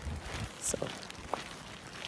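Faint scattered scuffs and rustles with a brief click or two, and a short spoken "so" about half a second in.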